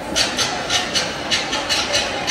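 Festival dance accompaniment of percussion: sharp hits about three to four a second over a steady noisy bed.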